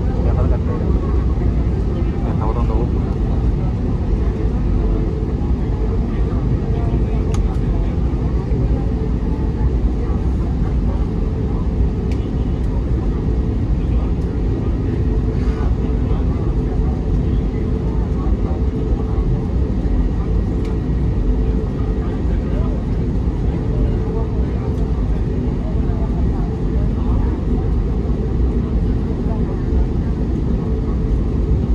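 Airbus A320neo cabin noise while taxiing: the engines running at low taxi power, a steady, even rumble heard from inside the cabin.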